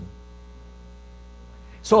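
Steady electrical mains hum, with a man's voice coming back in near the end.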